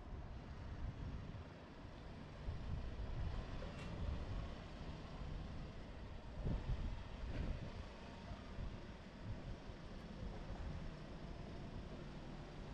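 City street ambience: a steady wash of passing traffic with a low wind rumble on the microphone, swelling briefly a couple of times.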